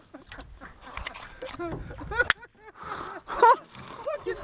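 Excited human voices, wordless exclamations rather than sentences, loudest about three and a half seconds in, with a sharp click a little past two seconds and a low rumble underneath.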